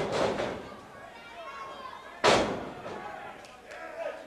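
A single sharp slam in a wrestling ring a little over two seconds in, the loudest sound here: a wrestler being struck or driven down onto the ring. Arena crowd murmur runs underneath.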